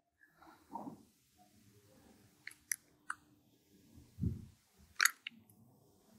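Faint, scattered sounds close to a microphone: a few sharp computer-mouse clicks, in the middle and near the end, with soft mouth and breath noises between them.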